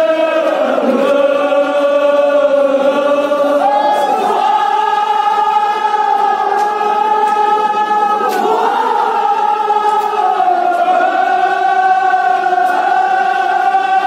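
Men's voices chanting a devotional chant together in long held notes. The pitch steps up about 4 seconds in, dips and rises again about 8 seconds in, then settles.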